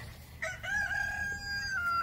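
A rooster crowing once: a single long, held call that starts about half a second in and dips slightly in pitch at its end.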